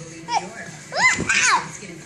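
A young child's high-pitched squeals: a short falling one, then two rising-and-falling ones about a second in.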